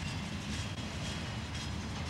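Freight train cars, a tank car and boxcars, rolling slowly past: a steady rumble of steel wheels on the rails with light clicks from the wheels and rail joints.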